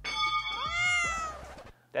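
A single drawn-out cat meow, its pitch rising and then falling, lasting about a second and a half.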